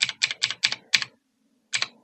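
Computer keyboard keys tapped in quick succession, about six presses in the first second and two more near the end: keystrokes stepping a video editor's timeline forward frame by frame.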